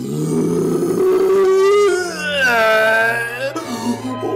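A cartoon character's long, strained vocal grunt as he pushes, held steady for about two seconds, then turning into a wavering, howl-like moan that dips and rises in pitch.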